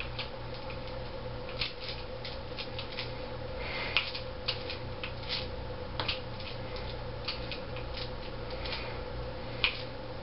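Scattered light clicks and rustles from someone moving and handling a hammer during an exercise, over a steady hum. The sharpest clicks come about four seconds in and near the end.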